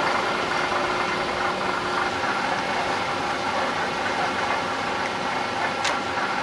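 Steady mechanical hum and hiss of running shop machinery, with faint steady tones and a short click near the end.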